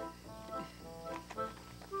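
Accordion playing softly, a run of short held notes and chords that change about every half second.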